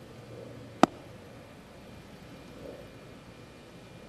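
A single sharp slap about a second in: a 60-degree sand wedge striking the bunker sand just behind the ball in a short splash shot, the sole of the club slapping the sand and cutting across it.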